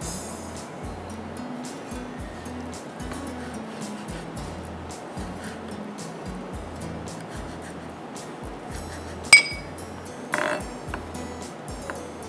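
Background music with a steady repeating bass line, over light taps of a chef's knife cutting sun-dried tomatoes on a wooden chopping board. About nine seconds in there is one sharp ringing clink of glass, the loudest sound.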